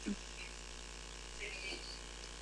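A quiet pause between speech: a low, steady background hum, with a faint short sound about one and a half seconds in.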